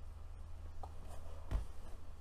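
Faint handling noises of mascara being applied, a few small scratches and one soft knock about one and a half seconds in, over a steady low hum.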